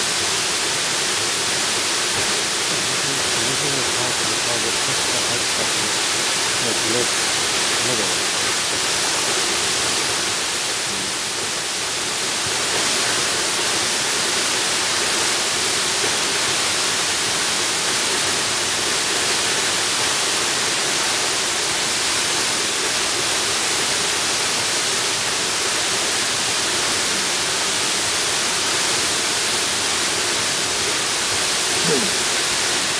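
A tall waterfall's steady hiss of falling water, dipping slightly in level about eleven seconds in.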